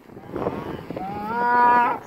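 A cow mooing: one long moo that starts rough, rises in pitch about halfway, and holds steady until it stops just before the end.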